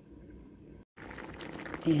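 Chicken and potatoes in a cooking-cream sauce simmering in a frying pan on low heat, bubbling. The first second is faint, then after a brief dead gap the bubbling comes in louder.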